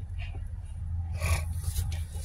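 Rustling and rubbing of packaging as hands rummage through a cardboard box of yarn: two brief rustles, the second and louder just past the middle, over a steady low hum.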